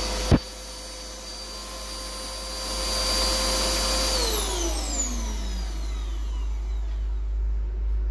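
World Dryer Airforce high-speed hand dryer shutting off: a sharp click about a third of a second in as the blast of air drops away. Its motor whine holds steady, then from about four seconds in falls in pitch as the motor spins down.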